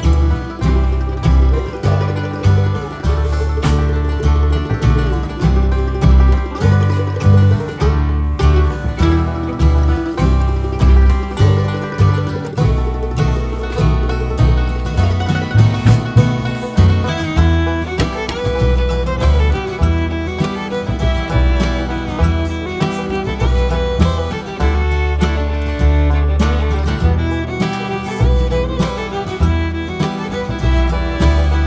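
Background music, an upbeat bluegrass-style tune with fiddle and banjo over a steady bass beat.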